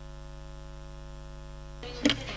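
Steady electrical mains hum with many overtones, a low buzz picked up through the chamber's microphone and amplification system. Near the end, broader room noise comes back in over the hum.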